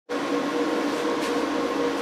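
Growatt 5000ES solar inverters running, giving off a steady hum with cooling-fan noise and a few constant low tones.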